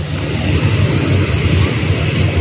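Steady outdoor rumble of wind against the phone microphone, a loud low buffeting with a lighter hiss above it.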